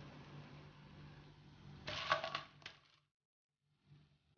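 Faint steady hiss with a low hum, then about two seconds in a short clatter with a ringing tone as the fried pakodas are tipped from a slotted skimmer spoon onto a plate. The sound cuts off suddenly shortly after.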